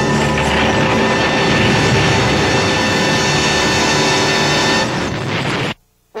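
Cartoon sound effect of ice bursting up and crashing, a loud continuous rushing noise mixed with dramatic orchestral music, cutting off suddenly near the end.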